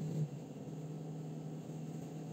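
A steady low hum over faint background hiss. It is louder for the first quarter second, then drops and holds steady.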